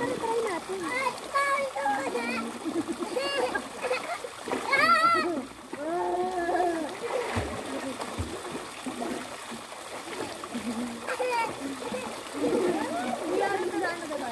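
Water from pool fountains splashing steadily into a swimming pool, under voices of people calling and talking, with one louder call about five seconds in.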